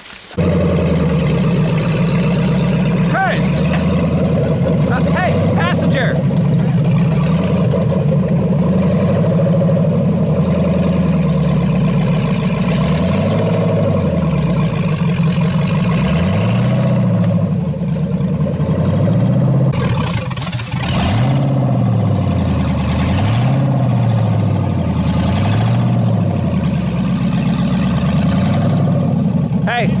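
Off-road rock-crawler buggy's engine running under load, revved again and again in rising and falling surges about every two seconds as the buggy strains against a tree and a log.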